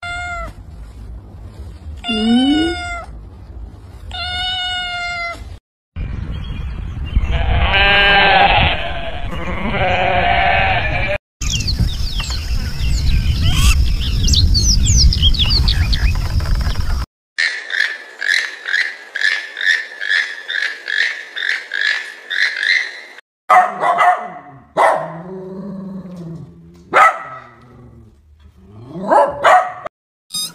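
A string of different animals' calls, each cut off abruptly: short high kitten mews in the first few seconds, then louder calls from other animals, including a run of evenly repeated calls at about two or three a second.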